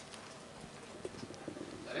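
Quiet press-room room tone with a few faint, scattered clicks, and a voice beginning right at the end.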